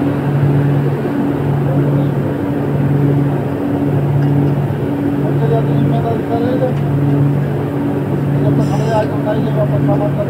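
Denim-finishing machinery running loud and steady, with a low hum that pulses on and off about once a second.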